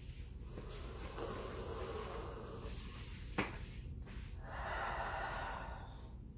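A woman's slow, deep breathing while lying face down in a diaphragm-strengthening 'crocodile breath' drill: a long breath drawn in through the nose, then a breath let out through the mouth. A single short click comes between the two breaths.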